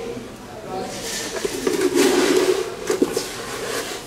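Gravel poured from a cup into a dry aquarium, rattling and sliding over the rocks for about two seconds, with a few sharp clicks as pieces land.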